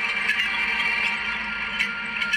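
Film soundtrack heard through a TV's speakers in a room: background music under indistinct crowd chatter.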